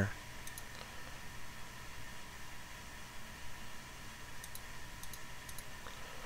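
Faint, scattered clicks of a computer mouse and keyboard, a few near the start and a small cluster about four and a half seconds in, over a steady low hum.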